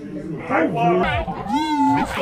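Teenage girls' voices making playful vocal sounds, ending in one drawn-out, high-pitched, wavering call about one and a half seconds in.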